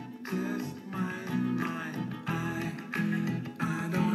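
A soft, tender song with a male vocal, played at high volume through a Bose Wave Music System IV.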